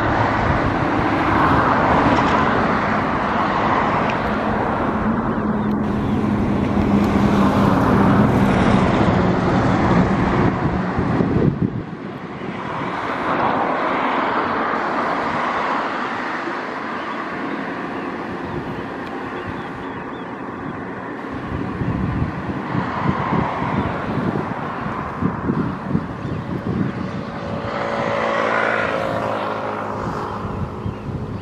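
Outdoor traffic noise: a motor vehicle runs by steadily for about the first twelve seconds and then drops away abruptly, followed by uneven gusts of wind buffeting the microphone.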